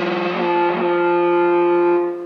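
Electric guitar with P90 pickups played through a 1969-style Muff Fuzz pedal into a Fender Vibro-Champ amp: fuzzy, distorted notes. There are a couple of note changes shortly after the start, then a chord held, sustaining steadily.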